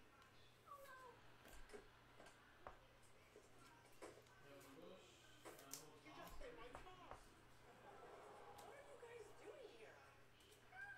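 Near silence: faint clicks and light handling noises from trading cards being sorted by hand, over a steady low hum, with faint wavering glides in the background.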